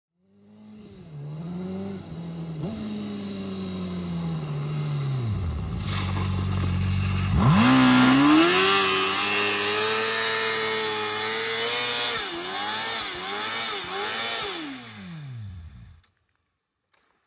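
Motorcycle engine running at low revs, then revving sharply about seven seconds in and held high with the rear tyre spinning in a burnout, then blipped up and down several times before the revs drop and the sound cuts off at the end.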